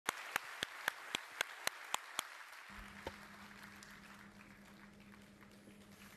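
Faint audience applause dying away, with a rapid run of sharp camera-shutter clicks, about four a second, over the first two seconds. A low steady hum comes in a little before halfway.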